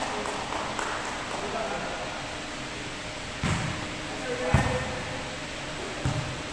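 A volleyball struck twice in a rally, with two sharp slaps about a second apart, the second one louder. The hits echo in a large gym, over the voices of players.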